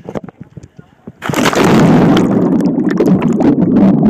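Light knocks of a phone being handled. About a second in, a loud, continuous rushing of water churning against the phone's microphone takes over, heavy and overloading, as the phone is dipped into or splashed by the water.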